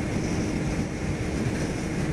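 Wind buffeting the microphone, with the engine and road noise of a Kawasaki Ninja 250R motorcycle underneath, as it rides at speed; a steady rush with no break.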